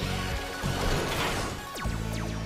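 TV action soundtrack: dramatic music under metallic clanks and whooshing effects as giant robot parts lock together, with one heavier hit near the end.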